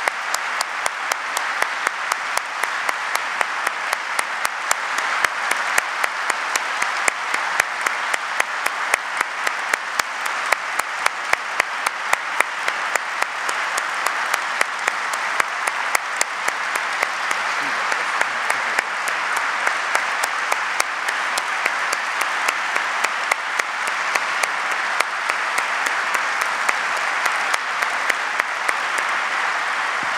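Sustained audience applause, a dense even clatter of many hands, with sharper single claps close to the microphone standing out through most of it.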